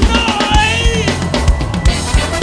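Live funk band playing an instrumental groove, the drum kit's kick drum keeping a steady beat under the band. A held lead note sounds for about the first second, then breaks off.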